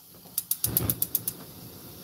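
Gas stove igniter clicking rapidly, about eight sharp clicks in under a second, with a brief low rush in the middle of the run.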